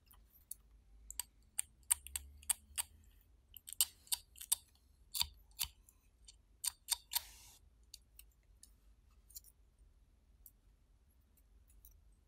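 A small blade scraping the enamel off thin copper magnet wire from a transformer's windings: irregular sharp clicks and short scrapes for the first seven seconds or so, then only a few faint ticks.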